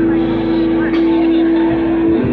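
Live rock band playing through a large outdoor PA, heard from the audience, with one long note held through the whole passage.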